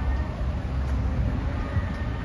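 Wind buffeting the microphone as a steady low rumble, over the general noise of the city below.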